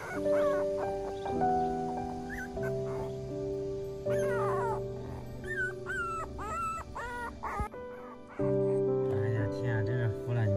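Young puppies whimpering in high, wavering cries that come in several bouts, over background music with long held notes.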